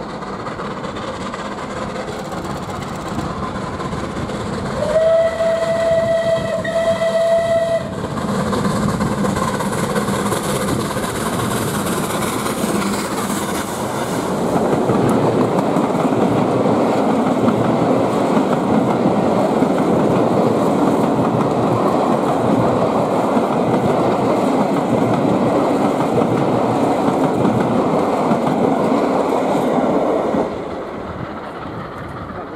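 Steam locomotive sounding its whistle, one steady high note held for about three seconds, about five seconds in. Then the passing train builds into a loud rumble and clatter of steam and coach wheels on the rails from about halfway through.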